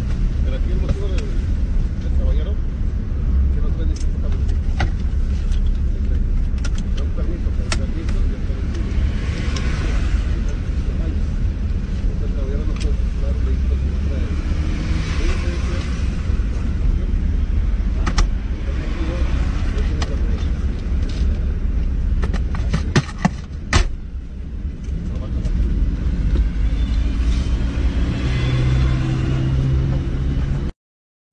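Car idling, a steady low rumble heard from inside the cabin, with scattered sharp knocks and clicks as the seat and console are rummaged through.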